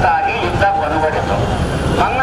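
A man speaking through a handheld microphone, with a steady low rumble underneath.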